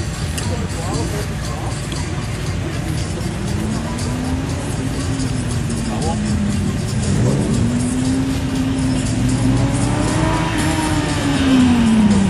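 Seven-style open-wheeled sports car's engine revving up and easing off several times as the car weaves through a slalom course, its pitch rising and falling with each burst. It grows louder as the car approaches and peaks near the end before dropping away.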